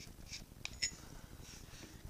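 Faint handling sounds of a pencil being drawn out of a machinist level's metal vial tube: soft rustling with two light ticks a little under a second in.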